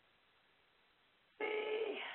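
Near silence, then about one and a half seconds in a short, steady tone with several pitches at once starts abruptly.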